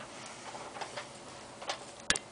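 A few faint, irregular clicks and taps over low room hiss.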